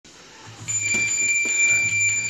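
A long, steady, high-pitched electronic beep starting about two-thirds of a second in and held for over a second, typical of a boxing round timer signalling the start of a round.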